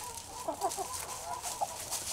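Chickens in a straw pen clucking, a run of short, low calls.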